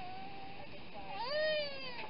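A thin held note, then about a second in a louder meow-like cry that rises and falls away, over the steady rush of an airliner cabin in flight.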